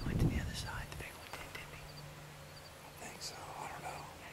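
Hushed whispering, with a low rumble on the microphone in the first second.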